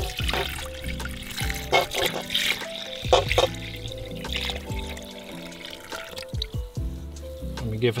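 Water poured from a stainless steel bowl into a stainless steel mixing bowl onto sourdough levain, splashing, under background music.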